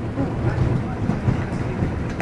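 A small boat's engine running steadily, a continuous low rumble, inside a canal tunnel.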